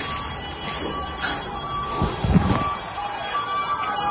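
Electronic alarms sounding in steady tones that switch on and off, over background noise, with a short burst of low rumbling noise a little after two seconds in.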